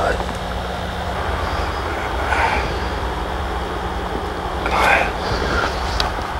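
Steady low rumble and hiss of a breeze on the microphone, with a faint steady electrical hum underneath and two brief soft sounds about two and five seconds in.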